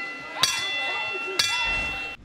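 Boxing ring bell struck twice, about a second apart, each strike ringing on over voices in the crowd.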